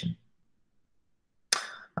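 Dead silence of gated video-call audio after a man's sentence ends. About one and a half seconds in, there is a short sharp noise that fades quickly, just before his voice returns.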